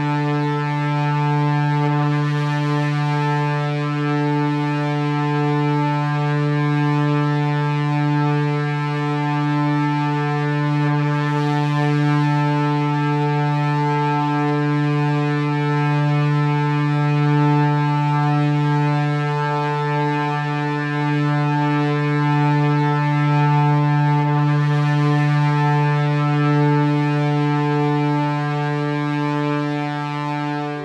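A steady electronic drone holding one low note with a rich stack of overtones, the upper ones slowly pulsing, over a faint hiss.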